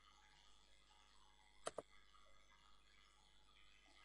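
Two quick computer mouse clicks close together, a double-click a little under halfway in, against near silence.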